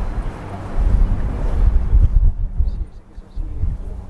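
Wind buffeting the microphone in gusts, a low rumble that swells about a second in, eases briefly near the end and comes back.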